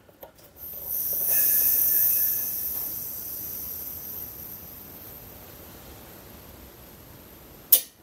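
Compressed air hissing through the compressor's outlet regulator as its knob is turned up, starting about a second in with a faint whistle, then fading slowly as the pressure switch's line fills toward 60 psi. Near the end a single sharp click: the water-pump pressure switch's contacts snapping open at its cut-out pressure.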